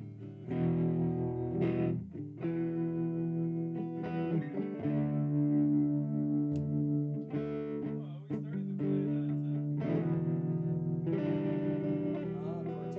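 Electric guitar played through an amplifier: chords and notes each held for a second or two before changing to the next.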